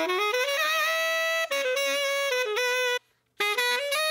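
Recorded saxophone line played back, one long held note followed by shorter notes, heard through an equaliser that cuts the low end and tames the instrument's nasal tone. The playback cuts out abruptly for a moment near the end and then starts again.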